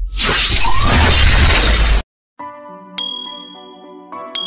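Intro sound effects: a loud crashing burst of noise with a deep rumble under it lasts about two seconds and cuts off abruptly. After a brief break, a sustained synth chord begins, and a bright notification-bell ding rings out about a second later.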